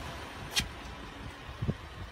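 Low rumble of wind and handling noise on a handheld microphone, with one sharp click about half a second in and a few soft thumps near the end.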